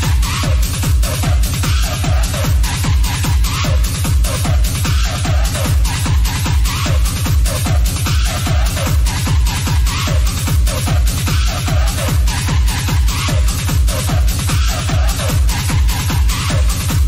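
Techno played from DJ decks: a steady four-on-the-floor kick drum at about two beats a second under a repeating synth figure.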